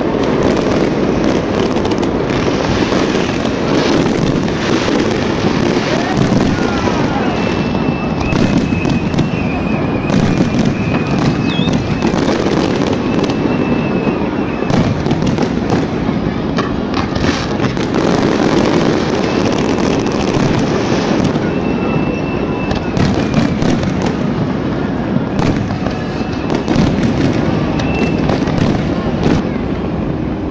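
Large aerial fireworks display: a continuous barrage of shell bursts and crackling. A high whistling tone rises above it several times, from about eight to twelve seconds in, and briefly again after twenty-one and twenty-seven seconds.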